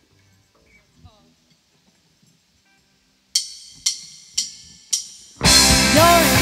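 A drummer's count-in: four sharp clicks about half a second apart, then the full rock band of drums, bass and electric guitar comes in loud on the next beat near the end.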